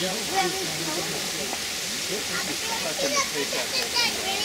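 Several people's voices talking in the background over a steady hiss.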